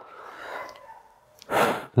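A person's breathing: a soft, drawn-out exhale, then a short, louder intake of breath near the end.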